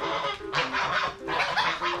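White domestic geese honking, in two harsh bursts: one about half a second in, the other near the end.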